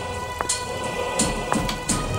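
Film soundtrack music with a regular beat of hissing, cymbal-like strikes about every 0.7 s and low thumps, over a steady rain-like hiss and sustained tones.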